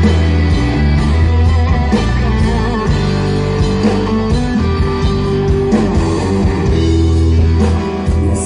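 Live rock band playing an instrumental passage: electric guitars over a pulsing bass line and drums, with no singing.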